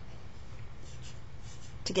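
Marker writing on paper, a few short scratchy strokes over a steady low hum.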